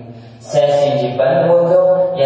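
A man's voice drawing out words in a slow, sing-song way, almost like chanting, with long held notes. It starts about half a second in after a brief lull.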